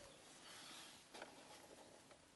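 Near silence: faint background hiss with one soft click just after a second in.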